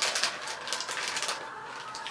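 Crinkling and rustling of a plastic chip bag being handled, a dense run of crackles that thins out after about a second and a half.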